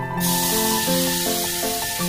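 Batter poured into hot oil in a steel wok, sizzling loudly from just after the start, over background music with a steady melody.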